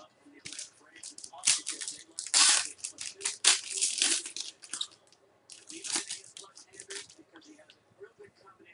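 Trading-card pack wrappers being torn open and crinkled, with cards handled. It comes as a run of irregular ripping and rustling bursts, the loudest about two and a half seconds in, with a short pause near the middle.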